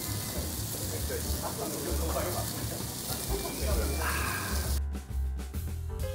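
Meat sizzling on a tabletop grill, with diners chattering in the background. About five seconds in the sizzle cuts off abruptly and background music begins.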